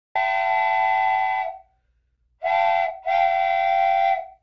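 A whistle sounding three steady blasts with several pitches at once: a long blast, then after a short silence a short blast and a long one.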